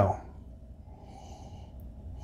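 A faint, airy sniff, about a second long, through the nose as a glass of bourbon is nosed.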